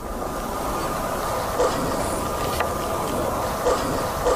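Heavily amplified night-time forest recording: a steady noisy drone with hiss and a few faint ticks, played as a possible demonic growl.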